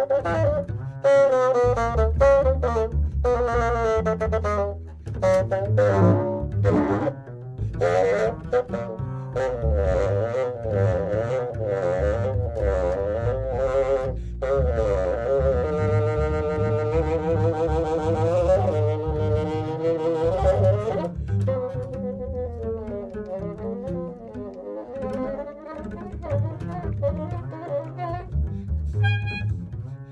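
Contemporary improvised chamber-orchestra music. Reed instruments play wavering, sliding lines over low bowed strings and double bass, and settle into held chords about halfway through.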